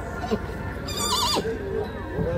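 A horse whinnying once, about a second in: a short, wavering high call that drops away sharply in pitch.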